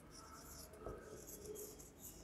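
Marker pen writing on a whiteboard: a faint run of short scratching strokes as the letters are written.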